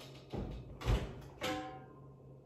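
Covered enamel roasting pot lifted out of the oven and set down on the stovetop: three knocks of metal cookware about half a second apart, the middle one a heavy thud, the last a clank with a short metallic ring.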